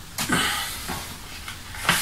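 Rustle of a brown paper envelope being handled, a short burst that fades away over about a second.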